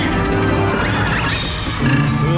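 Dark-ride soundtrack from the ride's speakers: music with crashing sound effects, the crash noise strongest a little past halfway through.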